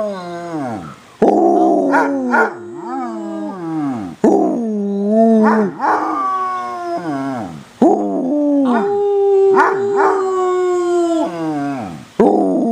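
Basset hound howling: a run of long, drawn-out howls, each starting abruptly, held, then sliding down in pitch at its end. A new howl begins every three to four seconds.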